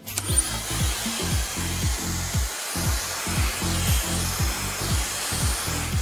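Dyson Supersonic hair dryer blowing: a steady rush of air that starts abruptly. Under it, music with a beat of deep thuds that fall in pitch, about three a second.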